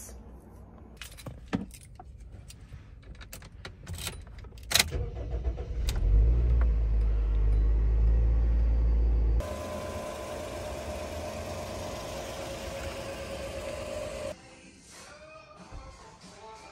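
Keys jangling and small clicks, a heavy thump about five seconds in, then a Toyota Probox's engine running with a deep rumble heard from inside the cabin. About nine seconds in it cuts to a steadier hum with a high, even whine, and near the end to quieter sounds.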